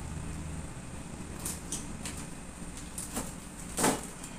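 A few short knocks and clicks of household items being picked up and handled, the loudest just before the end, over a low steady hum.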